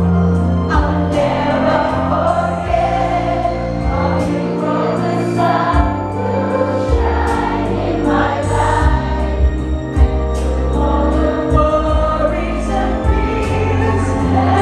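Live band music with many voices singing the song together: the audience singing along.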